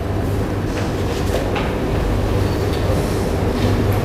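Steady low hum and hiss of room background noise, with a few faint knocks in the first two seconds.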